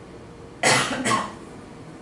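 A man coughing, two quick hacks starting about half a second in.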